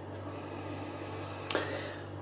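Pause in speech: room tone with a steady low hum, and a faint click about one and a half seconds in.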